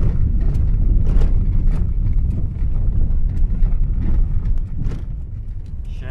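Steady low rumble of a car driving on a dirt road, heard from inside the cabin, with occasional light knocks from bumps. It eases somewhat near the end.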